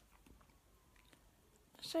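Near silence with a few faint, scattered clicks, then a woman's voice begins just before the end.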